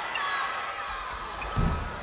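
Arena crowd murmuring during a free throw, then a short low thud about a second and a half in as the missed shot comes off the rim and players go for the rebound.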